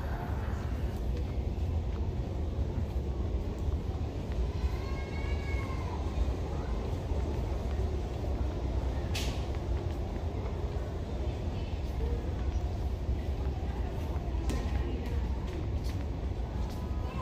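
Large store's interior ambience: a steady low rumble and hum heard from a walking handheld camera. A faint distant voice comes a few seconds in, and a sharp click about nine seconds in.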